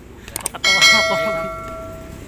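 Subscribe-button sound effect: a couple of soft mouse clicks, then a single bright bell ding that rings out and fades over about a second and a half.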